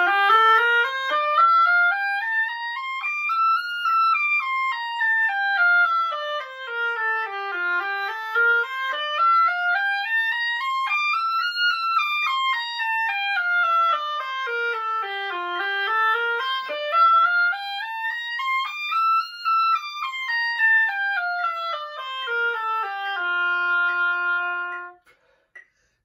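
Solo oboe playing an F scale in steady triplets over two octaves, running up and down three times without a break, then holding a long low F that stops just before the end.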